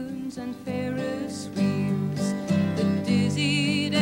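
A woman singing a folk song solo, accompanying herself on acoustic guitar; near the end she holds a note with a wavering vibrato.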